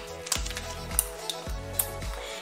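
Background music with held notes, over which come a few light clicks of a metal bit being fitted into a drill chuck.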